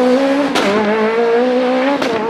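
Citroën C2 S1600 rally car's four-cylinder engine at high revs, accelerating away. About half a second in, the revs drop with a sharp crack at a gear change, then climb again.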